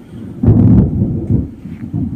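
Wind blowing across a phone's microphone: a loud, gusty low rumble that swells sharply about half a second in and eases off toward the end.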